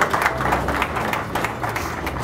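A small audience applauding, the clapping thinning a little toward the end.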